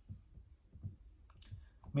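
Dry-erase marker writing on a whiteboard: a few faint, short taps and strokes of the tip on the board.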